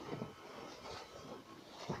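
Faint steady background noise in a pause between phrases, with a man's voice starting again just before the end.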